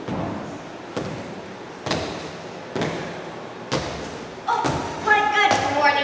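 Slow footsteps on a wooden stage floor, one heavy step about every second. About four and a half seconds in, a voice starts on held, steady notes, like singing or humming.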